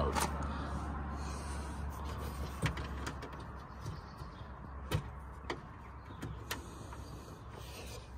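Hands unplugging a headlight bulb's plastic connector through a wheel-arch access panel: scattered small clicks and knocks of plastic parts being handled, over a faint low rumble.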